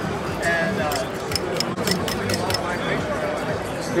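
Background of a busy exhibition hall: distant chatter and music, with a quick run of light ticks in the middle.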